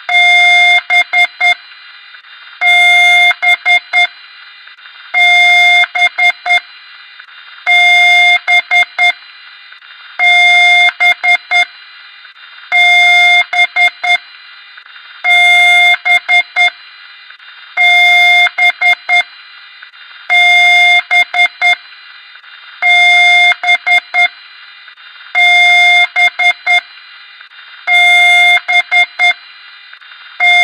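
A computer's internal speaker sounds a repeating beep code: one long beep followed by a quick run of several short beeps, the cycle coming back about every two and a half seconds, over a steady hiss.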